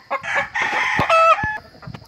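Caged gamecock roosters calling and crowing, with a short pitched rooster call about a second in, just after a sharp click.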